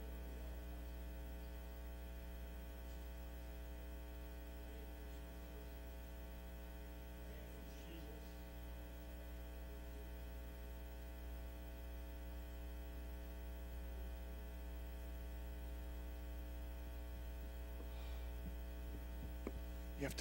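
Faint, steady electrical mains hum with a stack of higher overtones, unchanging throughout.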